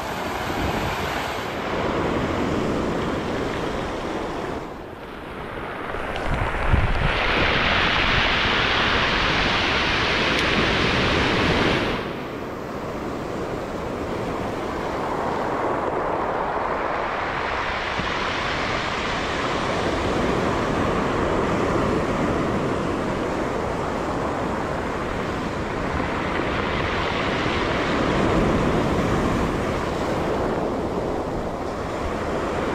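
Ocean surf breaking and washing up the beach, in swells that rise and fall; the loudest surge comes about seven seconds in and lasts about five seconds.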